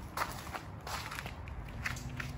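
A few soft footsteps over a low, steady background rumble.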